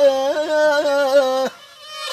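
Live Black Sea folk music with kemençe and singing: one long held note with quick ornamental flicks, which breaks off abruptly about one and a half seconds in.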